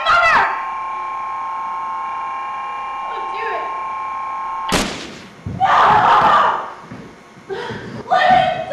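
A steady droning hum of several tones under a brief voice; about five seconds in, a sharp thump, then a loud scream-like cry lasting over a second.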